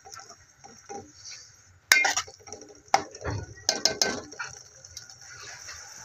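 A spoon stirring thick curry in a metal pot, knocking and clinking against the pot's side a few times, with a cluster of knocks about two thirds of the way through.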